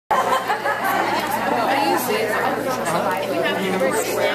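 Several people talking at once: overlapping, unintelligible chatter in a large room.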